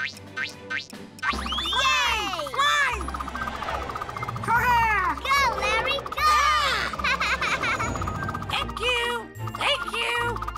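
Cartoon flight sound effects over playful children's music: many swooping, rising-and-falling whistle-like glides. The music fills in fully about a second in.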